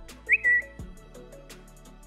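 A short whistle-like sound effect about half a second in, one quick rise that then holds briefly, over quiet background music with a soft, regular beat.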